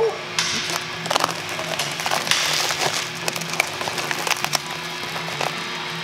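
Crinkling and crackling of plastic shrink wrap being slit open on a wrapped part, over music playing in the background.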